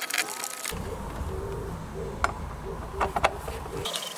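A few light clicks as the battery's securing bracket is handled and fitted into place, over a low steady rumble that starts and stops abruptly.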